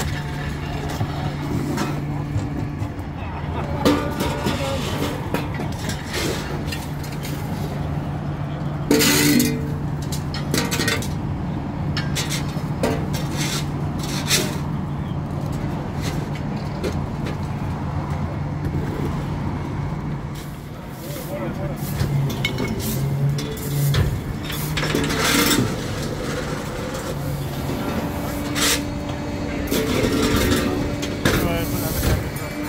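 A vehicle engine running with a steady low hum, with sharp knocks and clatter now and then.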